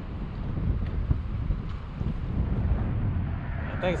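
Wind buffeting the camera's microphone, an uneven low rumble.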